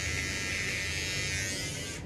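Handheld electric shaver buzzing steadily as it is run over the chin, cutting facial hair.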